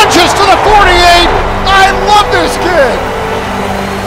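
A man's excited voice calling a football play, broadcast play-by-play style, over a background of noise. Steady sustained low notes, like a music bed, run underneath.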